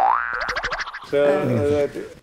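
Comic sound effect added in editing: a springy boing-like sound rising in pitch with a rapid flutter, lasting about a second. A voice follows.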